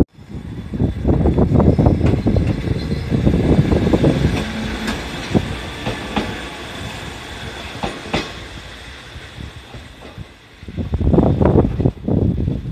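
Electric railcar passing close by, its wheels clacking over the rail joints with a loud rumble that peaks in the first few seconds and fades slowly as it moves away. A short loud rumble returns near the end.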